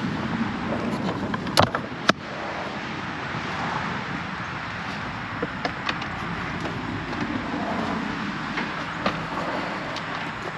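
A KTM 300 two-stroke dirt bike being kicked over without firing, under steady rustling noise, with two sharp clicks about a second and a half and two seconds in. The engine doesn't catch because the bike is still in gear, so the kicks spin the rear tire.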